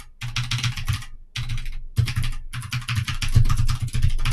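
Rapid typing on a computer keyboard, keystrokes coming in quick runs with a couple of brief pauses.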